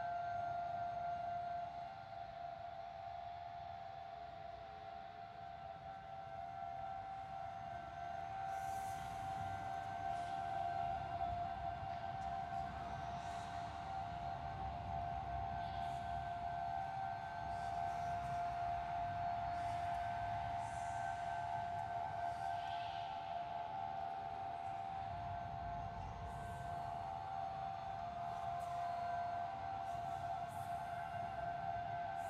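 Spooky ambient drone: a steady held chord of mid-high tones over a low rumble, with faint, scattered metallic clinks from about eight seconds in.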